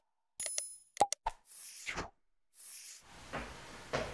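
Sound effects for an animated subscribe button: a quick run of sharp clicks and pops, with a short bell ding about half a second in, followed by two brief swishes. In the last second only faint room noise with a few light knocks remains.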